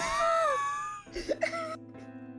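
A person laughing, with a long vocal sound that falls in pitch, then a shorter vocal burst about a second later. Soft background music with held notes starts near the end.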